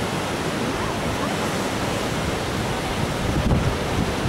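Ocean surf breaking below a cliff, a steady rushing noise, with wind buffeting the microphone about three and a half seconds in.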